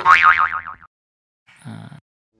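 A cartoon-style "boing" comedy sound effect: a pitched twang that wobbles up and down in pitch and dies away within the first second. It is followed by a short pause and a brief low sound near the end.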